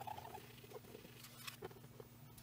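Faint, scattered squeaks and scratches of a gloved fingertip and an IPA-wetted tissue rubbing cured resin off the glass LCD screen of an Anycubic Photon Mono resin printer.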